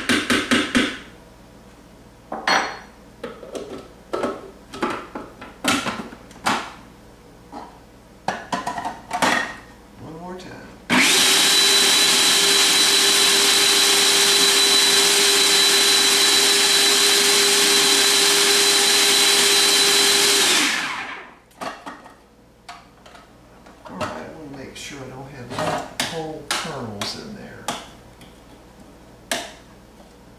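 Hamilton Beach food processor motor running loud and steady for about nine seconds, grinding drained canned corn to a mush, then spinning down. Before and after it, a utensil knocks and scrapes against the plastic bowl as the corn is pushed down.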